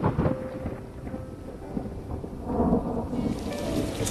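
Outdoor ambience: a steady low rumble with a rain-like hiss that grows louder and brighter about three seconds in.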